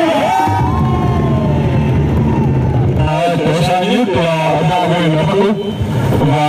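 A man speaking loudly through a microphone and public-address loudspeaker, with one long drawn-out call in the first half, and a crowd faintly behind.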